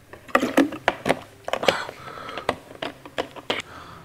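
Plastic water bottle crackling and clicking in the hands as it is drunk from and handled: about a dozen sharp, irregular clicks.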